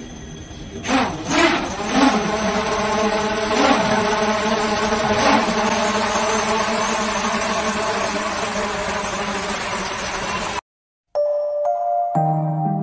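Swarm of many small quadcopter drones lifting off and flying, a dense steady buzz of propellers that swells over the first two seconds. The buzz cuts off suddenly about a second before the end, and soft music follows.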